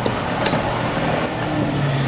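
Claw machine running as its claw lowers onto the prize boxes: a steady low mechanical hum over continuous arcade noise, with one sharp click about half a second in.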